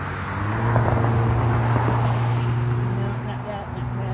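A motor vehicle's engine running steadily nearby, a low even hum.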